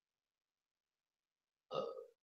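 Near silence, then a brief human vocal sound near the end, lasting about half a second.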